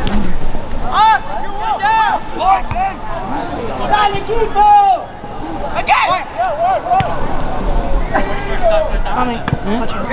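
Several people's voices calling out and talking over one another, with background chatter.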